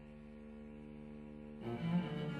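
Two cellos playing contemporary music: quiet low notes held steadily, then a louder bowed entry of new notes about one and a half seconds in, swelling near the end.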